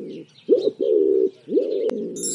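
Pigeon cooing: a run of low, rolling coos, each phrase opening with a quick upward swoop. There are short breaks about half a second and a second and a half in.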